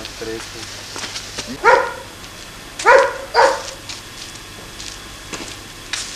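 A dog barking three times: once just under two seconds in, then twice in quick succession about three seconds in.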